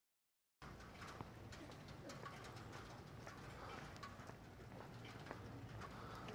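Faint bird calls, a scatter of short chirps, over a low steady hum and a few light clicks. The sound begins after a moment of silence.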